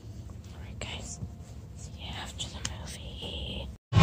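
Faint whispering close to the microphone over the low hum of a quiet cinema auditorium.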